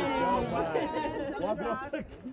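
Several people's voices overlapping, talking and laughing.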